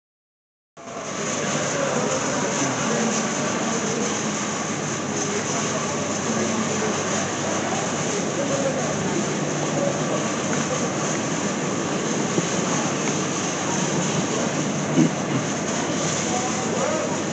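Busy railway station concourse ambience starting about a second in: a steady hubbub of travellers' voices and movement, with a single sharp knock near the end.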